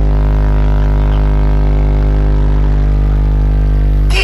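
Large outdoor sound-system speaker stacks playing one loud, deep bass tone, held steady without change.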